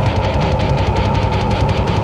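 Live heavy metal played back from a cassette tape: a fast, even drum beat under distorted guitar, with one guitar note held steady throughout.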